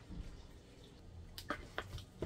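Hot water poured from a plastic container into a plastic bowl of fufu, faintly splashing at first, then a few sharp clicks and knocks in the second half.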